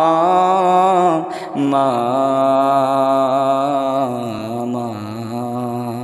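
Gojol vocals: a voice holding long drawn-out notes between sung lines. A higher note is held for about a second, then after a short break a lower note is sustained with a slight waver, fading near the end.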